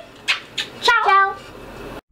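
A brief high-pitched voice saying one short word about a second in, with a soft hiss just before it.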